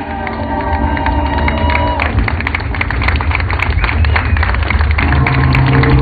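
Loud live symphonic death metal heard from the crowd. Held orchestral-style notes stop about two seconds in and give way to dense, heavy drumming, and a deep bass note comes in near the end.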